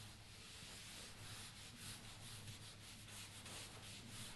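Whiteboard eraser wiping a whiteboard clean, a faint rubbing hiss in quick repeated strokes.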